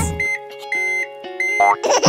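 Three short high-pitched electronic beeps, each starting roughly two-thirds of a second after the last, the first the shortest, over a faint sustained music tone.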